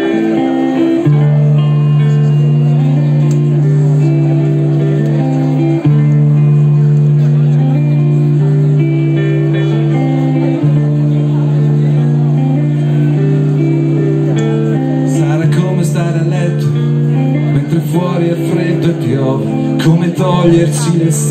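A live band playing amplified through a PA, with guitars over a long held low note. Voices come in over the music in the last few seconds.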